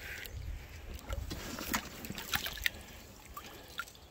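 Pond water sloshing and dripping as a drowned beaver is pulled through muddy shallows, with scattered small splashes and drips.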